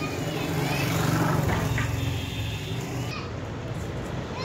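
Street ambience: a motor vehicle's engine running past, swelling to its loudest about a second in and then fading, with distant voices.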